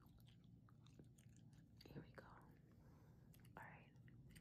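Faint, close-miked gum chewing: soft wet smacks and small mouth clicks, irregular throughout.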